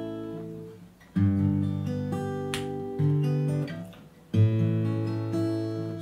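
Acoustic guitar fingerpicked: an A major chord broken into single notes in a five-four-two-three-one string pattern, played through twice. The strings ring and fade briefly before each new start.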